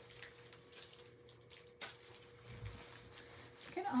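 Hands sorting through a stack of plastic packets of adhesive rhinestones and gems, giving faint scattered clicks and rustles, with one sharper click a little before halfway. A faint steady hum runs underneath.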